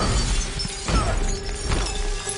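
Film sound effect of a large glass window shattering, with shards tinkling as they fall and two sharp impacts, one about a second in and one near the end.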